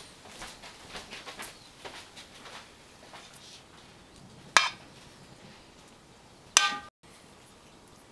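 Metal cutlery tapping and scraping against a mixing bowl: a run of light quick taps and scrapes, then two sharp clinks about two seconds apart, the second ringing briefly.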